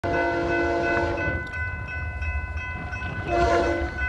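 Diesel locomotive air horn sounding for a grade crossing: one blast that ends about a second and a half in, then a short blast near the end. Under it the crossing bell rings steadily, with a low rumble of the approaching train.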